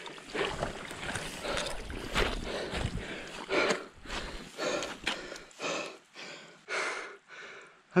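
A man panting hard, quick heavy breaths about two a second, out of breath from the exertion of dragging himself out of a peat bog.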